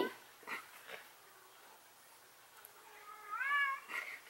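A single meow call, rising then falling in pitch and lasting about half a second, a little over three seconds in.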